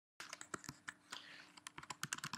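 Faint keystrokes on a computer keyboard, an irregular run of quick clicks as a command is typed into a terminal.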